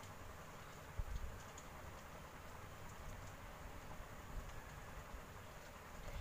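Faint clicks and scrapes of a metal spoon stirring thick mashed mango in a pressure cooker pot, with a low thump about a second in.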